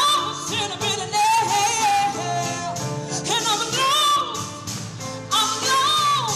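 A woman singing with long held notes and quick sliding runs, accompanying herself on the harp, whose plucked notes ring underneath the voice.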